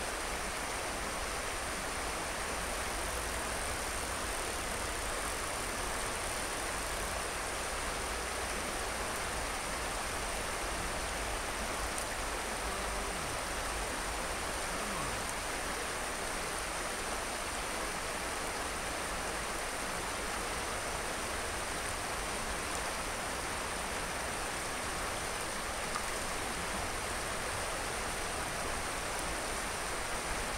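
Steady rush of stream water flowing over a shallow riffle.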